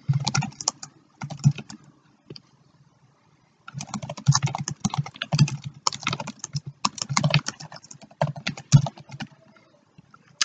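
Typing on a computer keyboard: quick runs of keystrokes, a pause of a couple of seconds about two seconds in, then steady fast typing until shortly before the end.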